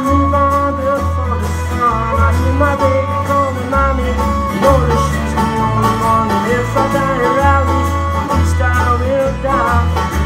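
Live country band playing an instrumental passage: plucked string instruments carrying the tune over a bass line that moves every half second or so.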